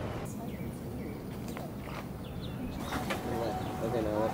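Outdoor ambience: a low steady rumble like wind on the microphone, with a few short bird chirps and faint voices in the last second.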